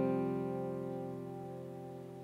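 Faith Neptune steel-string acoustic guitar with solid mango top, back and sides: a soft chord left ringing and fading slowly, with no new notes played.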